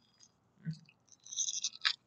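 Quiet crunching of a crunchy snack being chewed: a soft sound about two thirds of a second in, then a short run of crisp crackles ending in a sharp click near the end.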